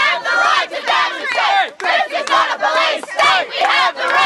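A crowd of protesters shouting slogans together, many voices overlapping.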